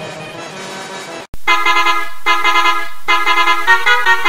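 A bus horn effect mixed with music plays fairly quietly, then cuts off abruptly about a second in. A louder multi-tone bus horn follows, sounding a tune in several blasts with short breaks, its pitch shifting near the end.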